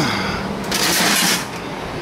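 A brief scraping, rustling handling noise lasting under a second, about halfway through, over a low steady hum.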